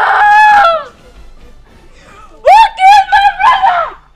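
Women wailing loudly in grief, in long high-pitched cries: one wail dies away about a second in, and another rises about halfway through and lasts over a second.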